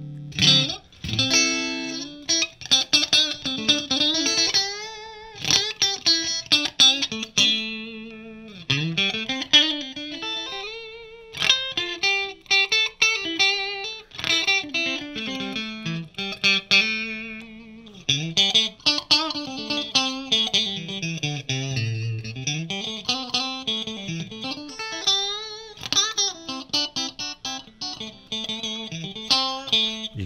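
Fender Custom Shop 1964 Stratocaster Relic electric guitar played through a Marshall JCM2000 amplifier on its clean tone: picked single-note lines and chords, with notes that bend and waver. The clean tone is crisp and taut.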